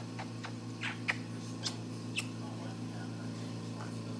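A child makes a few short, high squeaks and whimpers in the first half, over a steady low mechanical hum.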